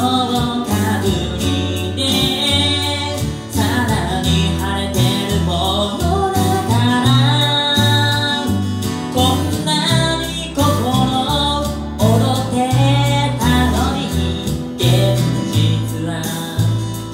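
A man singing a song while accompanying himself on acoustic guitar, the vocal carried over steady guitar chords and bass notes.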